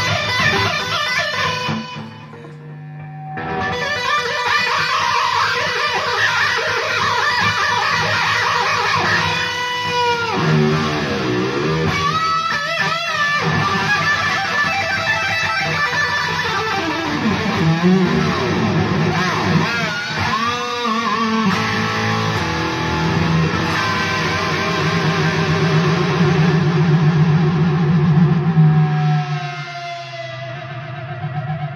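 Electric guitar, a Kramer played through an EVH amp head, in a continuous passage with several whammy-bar dips and wobbling pitch bends around the middle. There is a brief quieter gap about two seconds in.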